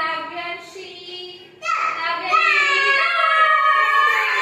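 Young children singing in long held notes: one phrase fades out in the first second and a half, then a louder, longer phrase starts near the middle.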